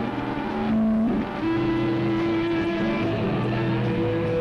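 Live rock band's distorted electric guitars droning on long held notes, the held pitch shifting up about a second in.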